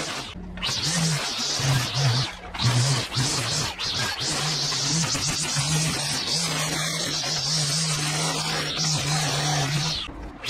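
Line trimmer (whipper snipper) running at cutting speed, its revs rising and falling, with the spinning line cutting grass and dirt along a concrete path edge.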